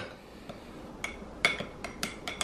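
A metal spoon stirring chia seeds and almond milk in a small drinking glass, clinking against the glass a few times in the second half.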